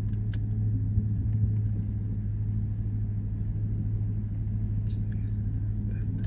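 Car engine running steadily at low revs, a low rumble heard from inside the vehicle.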